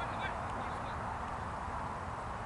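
Steady outdoor rumble, like wind on the microphone, with a few short, high bird calls about a quarter of a second in.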